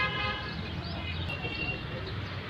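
A vehicle horn toots briefly at the start, with a thinner steady tone about a second later, over a constant low rumble of traffic.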